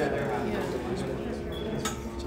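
Indistinct talking in the hall over a steady, unchanging drone, with a single sharp click near the end.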